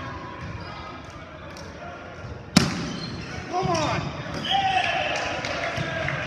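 A volleyball struck hard once, a single sharp smack about two and a half seconds in that rings through the hall. It is followed by players shouting.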